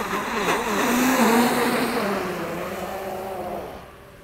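Traxxas XRT RC monster truck at full throttle on paddle tires, skimming across pond water: its brushless electric motor whines over the hiss of thrown spray. The sound peaks about a second in, then eases and drops away near the end.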